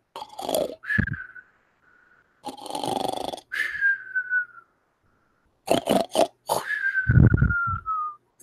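Comic mock snoring, three times: snorting breaths, each followed by a high whistle that slides down in pitch. The last whistle is the longest.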